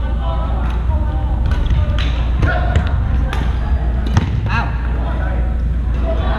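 Badminton rackets striking shuttlecocks in a gym hall, sharp irregular clicks from several courts, over distant voices and a steady low rumble.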